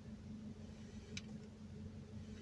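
Faint, mostly quiet window: a steady low hum and one sharp click about a second in, as a pod vape is put to the lips.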